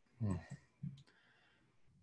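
Faint low voice sounds, then a single short, sharp click about a second in.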